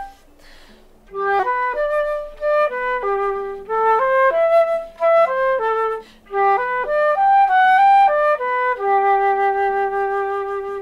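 Concert flute playing a G major scale exercise: after a short pause for breath about a second in, a run of notes stepping up and down, another brief break near six seconds, then a long held low G at the end.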